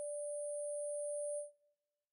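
Held final note of an electronic track: a single steady, pure synthesizer tone that stops about a second and a half in.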